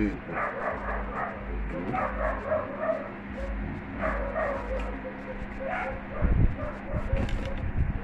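A fork clicking and scraping on a plate during eating, with short whining calls several times and a few louder dull knocks near the end.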